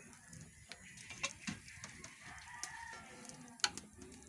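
A rooster crowing faintly, over scattered sharp crackles and clicks from the wood fire burning under the wok.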